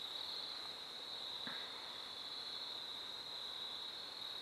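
Crickets trilling steadily, one unbroken high-pitched note, with a faint brief sound about a second and a half in.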